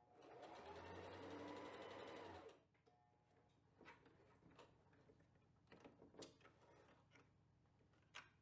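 Sewing machine stitching a short seam through layered quilt squares at a quick steady pace for about two seconds, then stopping. Faint rustles and light clicks of the fabric being handled and pulled out from under the presser foot follow.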